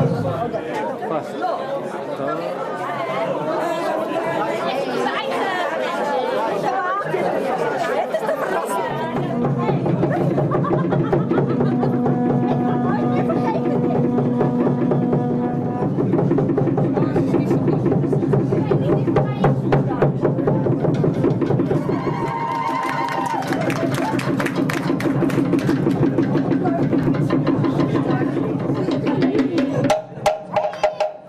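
A room full of people chattering, then from about nine seconds in a Polynesian drum group playing wooden slit drums and a bass drum. The drums keep up a fast rapping rhythm that grows denser in the second half.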